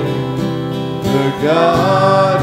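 Praise song with acoustic guitar strumming and a worship leader and small choir singing; the voices rise in pitch about a second and a half in.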